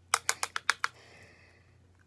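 A plastic e.l.f. powder compact being handled: five quick, sharp plastic clicks within the first second, followed by a faint soft rustle.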